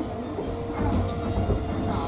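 Disney Resort Line monorail train running along its beam, heard from inside the car: a steady low rumble with a steady hum.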